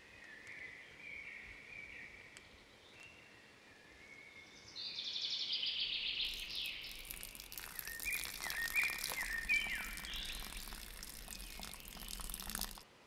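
Birds chirping and singing in woodland, with short high whistles and a buzzy trill about five seconds in. A steady rushing hiss joins about six seconds in, with descending chirps over it.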